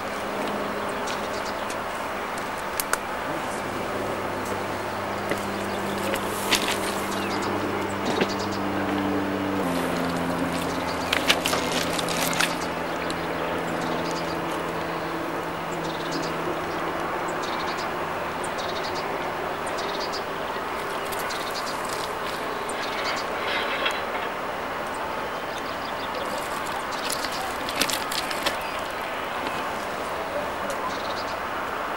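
A steady mechanical hum that drops to a lower pitch about ten seconds in and fades out a little past twenty seconds, over a constant hiss, with scattered sharp clicks.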